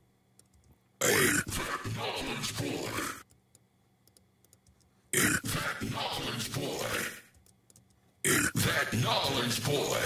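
A spoken DJ name-drop vocal processed through iZotope VocalSynth's 'Sweet Gibberish' preset, with some of the dry voice mixed in, played back three times. Each playback is about two seconds long, with short silences between.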